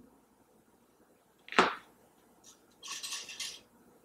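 Handling noises while a topknot bun is being pinned: a single sharp knock about a second and a half in, then a brief hissing rustle a little before three seconds that lasts about half a second.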